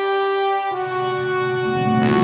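Intro theme music of long held brass notes. The note shifts about two-thirds of a second in, and more instruments swell in near the end.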